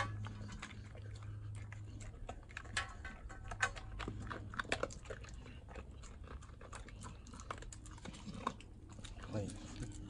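A dog eating from a bowl: irregular quick clicks and crunches of chewing and licking, with now and then a louder click against the bowl, as it finishes the food and cleans out the bowl. A steady low hum runs underneath.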